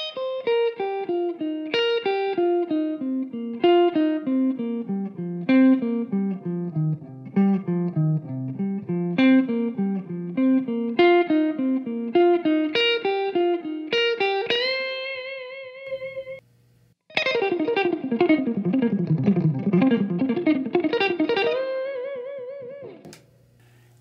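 Electric guitar playing a pentatonic scale exercise in sextuplets, two notes per string: a run down across the strings and back up, ending on a held note with vibrato about fourteen seconds in. After a short pause the same run is played again much faster, ending on another held vibrato note.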